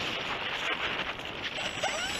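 Steady rush of airflow over the onboard camera of a Multiplex Heron RC glider in a descending glide, with no steady motor tone.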